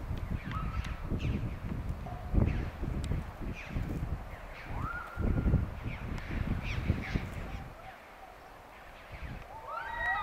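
Wordless human yells and whoops: a handful of short rising or held cries over a low rumble that drops away around eight seconds in.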